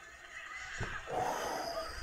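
The animated episode's soundtrack leaking faintly from headphones into the microphone, with a short click a little under a second in.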